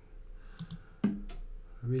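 Several sharp clicks of a computer mouse, stepping through the moves of a chess game replay on screen.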